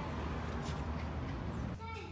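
A steady rushing noise, cut off near the end by a woman's high, drawn-out vocal sound as she bites into food.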